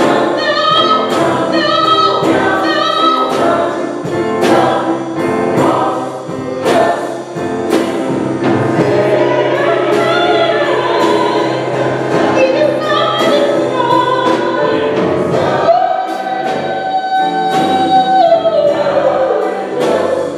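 Church choir singing a gospel song over a steady beat, with a soloist on a microphone; near the end a long held note slides down.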